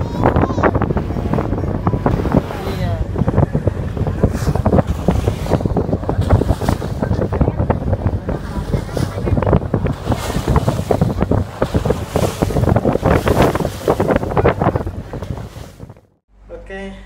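Wind rumbling and buffeting on the microphone on a small boat under way at sea, with water rushing and splashing along the hull.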